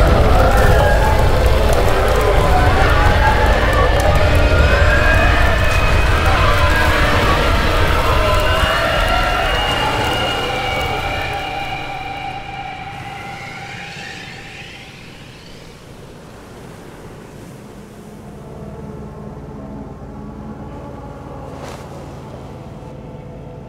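Film sound design: a heavy rumble under wavering, siren-like wailing tones, fading away over several seconds, with rising glides as it dies. Near the end a quieter, steady low engine drone comes in.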